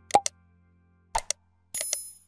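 Subscribe-animation sound effects: a quick click-and-pop about a tenth of a second in, two short clicks a little past a second, and a bright bell-like ring near the end.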